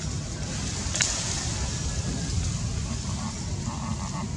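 Outdoor background noise: a fluctuating low rumble under a steady hiss, with one sharp click about a second in.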